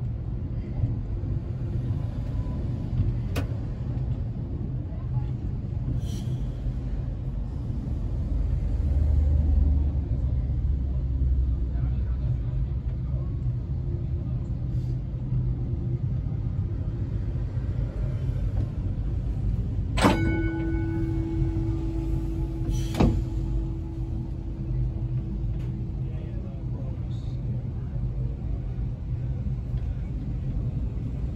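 W class tram running along its track with a steady low rumble that swells for a few seconds about a third of the way in. Near two-thirds in, the tram's gong is struck twice, about three seconds apart, and its ring hangs on for several seconds.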